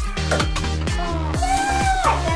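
Upbeat background music with a steady dance beat and a held synth-like tone in the second half.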